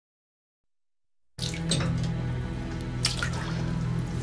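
About a second of silence, then music begins together with water sloshing and dripping, as of someone moving in a bathtub.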